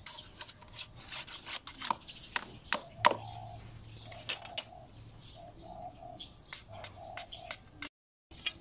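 A machete blade strikes dry sticks in a run of sharp chopping knocks, loudest about three seconds in. Lighter clatters follow as the dry sticks are handled. A dove coos repeatedly in the background from about three seconds on.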